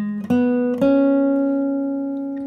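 Vintage Martin acoustic guitar playing three single plucked notes that step upward, the last left to ring and slowly fade. They are notes of a G-sharp minor pentatonic phrase, the A minor pentatonic shape moved down a semitone.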